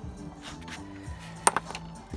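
Background music with steady held notes, and about one and a half seconds in two sharp clicks in quick succession: a rock being set down against other rocks.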